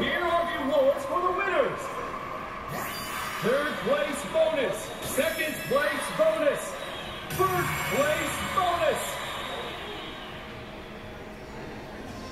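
Slot machine game sounds over the steady din of a casino floor: two runs of short pitched tones, each rising and then falling, the first a few seconds in and the second shortly after.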